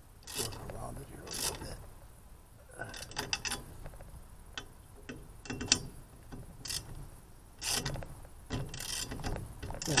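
Ratchet wrench and socket clicking in short runs, about one stroke a second, turning a nut on an aluminium antenna tube.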